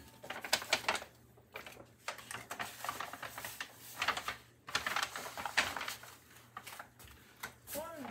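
Brown paper bag crinkling and rustling in irregular crackles as it is handled and pulled down over a head.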